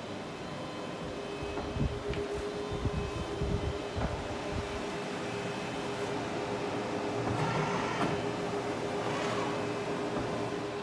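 Large-format inkjet printer running as it prints onto reflective sheeting: a steady mechanical hum with a constant low tone. There are low knocks in the first half and a swelling rush of noise near the end.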